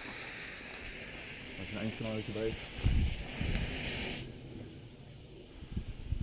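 Steady high hiss from a green smoke grenade as it is lit and begins pouring smoke, cutting off suddenly about four seconds in.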